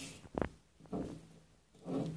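A single short knock about half a second in, as the rat works the egg against the plastic floor of the tub, followed by a person's soft, low voice twice.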